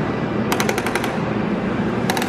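Knob of a coin-operated gumball machine being twisted: a quick run of ratchet clicks, about seven in half a second, starting about half a second in.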